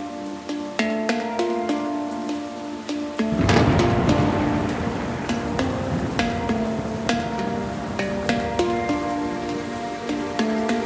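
Background music, a gentle melody of short notes. About three seconds in, a low rumble and a steady rain-like hiss join it and keep going under the music, like a thunder-and-rain ambience.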